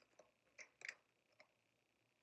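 Faint handling of a tarot deck as a card is drawn: a few soft clicks and rustles of card stock, the loudest pair just under a second in.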